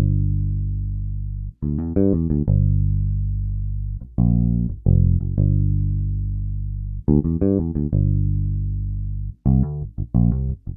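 Sampled P-style electric bass with flatwound strings and a single split-coil pickup (Evolution Flatwound Bass), playing a solo fingered phrase with a rich bassy tone. Long ringing low notes alternate with quick runs of short notes, four times over.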